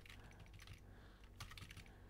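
Faint computer keyboard keystrokes, a few scattered key clicks with a small cluster past the middle, as a command line is edited.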